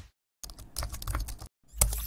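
Computer keyboard typing sound effect: a quick run of key clicks lasting about a second, then a single louder click near the end.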